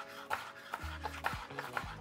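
Chef's knife dicing a shallot on a cutting board: a series of light, irregular knife taps against the board.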